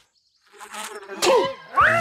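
Cartoon bee buzzing, then a cartoon character's yelp and a louder rising cry of alarm near the end as he leaps up.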